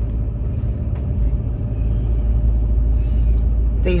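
Steady low rumble of a vehicle driving slowly along a paved road.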